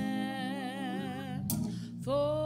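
Music: a solo voice holds one long note with a slow vibrato over a soft, steady accompaniment, with a short break for breath about a second and a half in.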